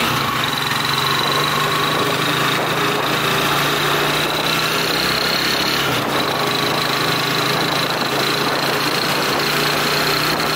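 Small engine of the vehicle carrying the camera, running steadily as it drives along a street, with a steady high whine above the engine note.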